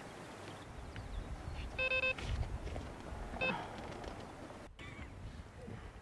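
Electronic carp bite alarm beeping twice, a short flat-toned beep and then a briefer one about a second and a half later, over a low rumble: the sign of a fish taking line on one of the rods.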